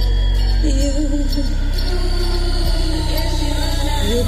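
Loud live music through a concert PA: a heavy, steady bass with a singer's wavering voice gliding over it.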